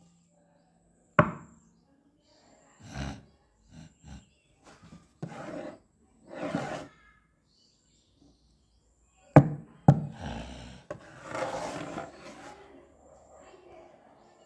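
Monster sound effects for a stop-motion Godzilla figure: sharp footstep thuds, one about a second in and a cluster of three around nine to eleven seconds in, with longer rough roar-like bursts between them.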